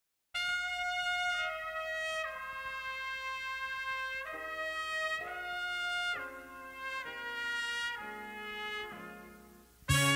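A slow horn melody in long held notes, the instrumental opening of a soul ballad, starting after a moment of silence. The fuller band with bass comes in right at the end.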